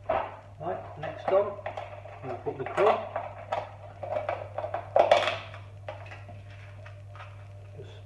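Kitchen items being handled on a work surface: a busy run of clattering knocks and clicks for about six seconds, loudest near the start, around three seconds in and around five seconds in, then settling.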